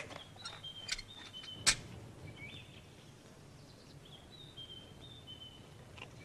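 A small bird chirping faintly: short high whistled notes in two groups, one near the start and one in the second half, over a low background hiss. One sharp click comes about a second and a half in.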